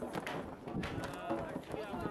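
Indistinct voices of people talking, with a few light knocks or footsteps among them.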